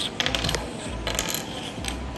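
Small plastic toy blocks clicking and tapping on a wooden tabletop as they are pushed about: a quick run of light clicks early on, then a few single clicks.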